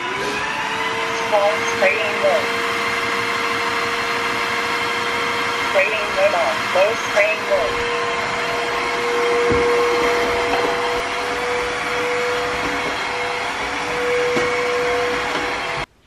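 Redkey W12 cordless wet-and-dry vacuum-mop switched on, its motor spinning up to a steady whine and running as it vacuums and mops the floor. The sound cuts off suddenly near the end.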